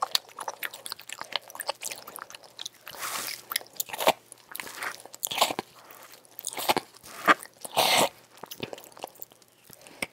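Close-miked biting and chewing of a bar of soap: a steady run of crisp crunches and small clicks, with longer, rougher crunches about three and eight seconds in.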